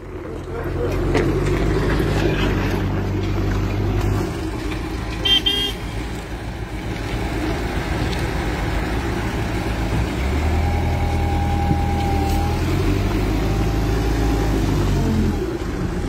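Diesel engine of a wheeled construction loader running close by, a steady low hum whose pitch and strength shift about four seconds in and again about ten seconds in. A short higher toot comes about five seconds in, and a thin held tone lasts about two seconds from about ten seconds in.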